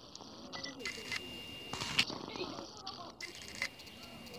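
Faint, indistinct talking from people nearby, with several sharp clicks scattered through it.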